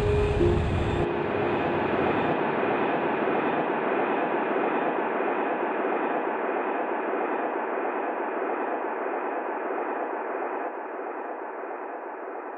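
A steady rushing noise that slowly fades and thins out, with a faint low tone in the first second.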